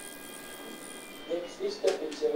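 A steady electronic tone from the phacoemulsification machine during surgery, made of several pitches at once, fading out about a second and a half in. Faint murmured voices follow, and a sharp click comes near the end.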